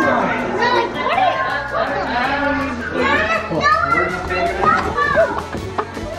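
Several children's and adults' voices chattering and calling out at once, with music playing underneath.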